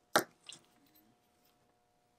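A sharp click of a small metal watchmaker's screwdriver put down on the bench, followed by a fainter tap about a third of a second later.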